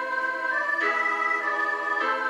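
Playback of a three-part choral setting for two sopranos, alto and piano: held chords in steady, unwavering tones, the harmony changing a little under a second in.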